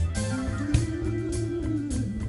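Live band playing: an electric guitar holds wavering notes with vibrato over bass guitar and drum hits.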